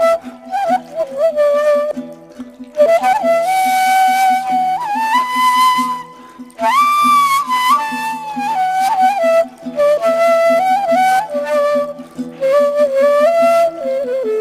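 Music: a flute playing a slow melody in phrases, with notes that bend and slide, over a low accompaniment that repeats in an even pulse.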